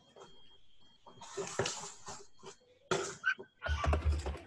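Rustling and light clicking from paper and small plastic tempera paint pots being handled on a desk, in short irregular bursts, with a low bump near the end.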